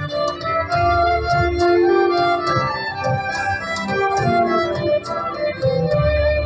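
Live folk-rock band playing an instrumental passage: sustained keyboard chords and violin lines over strummed guitar and steady drum and cymbal hits.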